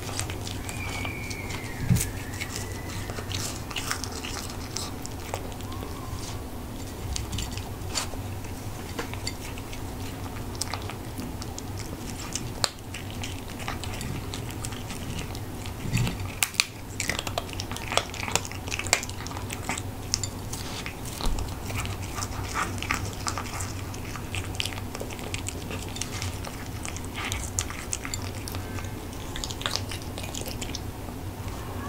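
A cat crunching dry kibble and freeze-dried chicken, close up: a steady run of sharp crunches and clicks throughout, thickest and loudest about halfway through.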